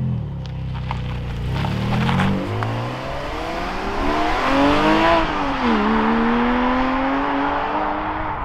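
Porsche 718 Cayman GTS 4.0's naturally aspirated 4.0-litre flat-six pulling away and accelerating hard, the engine note rising. About five and a half seconds in it drops at an upshift of the manual gearbox, then rises again.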